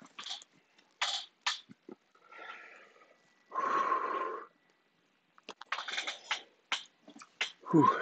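A man's pained breathing through the burn of a very hot Dorset Naga chili: sharp quick inhalations and sniffs, a longer breathy exhale with a faint hum about halfway through, then a rapid run of short breaths near the end.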